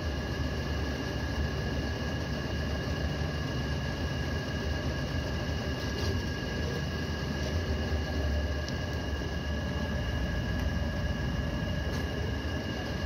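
A machine motor running steadily: a low hum under an even hiss, with two steady high whines.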